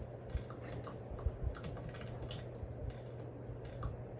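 A cartoon character chewing very hard, stiff gum, played through a TV speaker. It comes as irregular crisp crunches and clicks, several a second.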